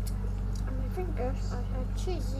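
A girl's voice making wordless, gliding sounds close to a small microphone held at her mouth, after a couple of short clicks near the start. A steady low hum runs underneath.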